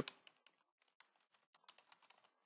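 Faint computer keyboard typing: a run of light, irregular key clicks.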